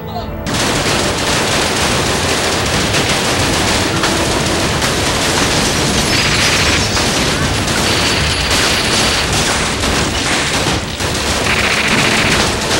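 Sustained rapid gunfire, many shots running together into a dense continuous rattle, starting about half a second in and dipping briefly near the end.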